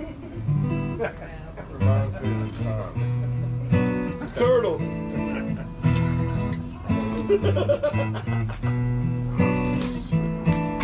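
Acoustic guitars strummed with a picked bass-note pattern, changing notes about once a second. A man's voice is heard briefly about halfway through.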